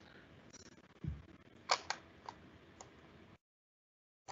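Faint room noise with a soft low thump about a second in and a few small sharp clicks, then the sound cuts out completely shortly before the end.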